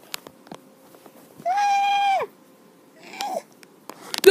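A child's high-pitched held vocal cry of about a second, level and then dropping in pitch at the end, followed near the end by a shorter falling cry. Faint scattered clicks come from the plush toys being handled.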